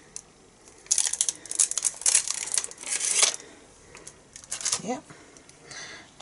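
Clear plastic crinkling and crackling in quick bursts for about two seconds as a photopolymer stamp and its clear sheet are handled, with a brief crackle again near the end.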